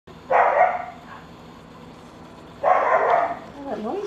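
A dog barking twice, about two seconds apart.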